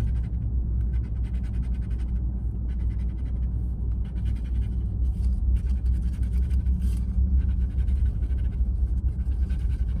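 Scratch-off lottery ticket being scratched with faint, irregular rasping strokes, over a steady low hum inside a car cabin.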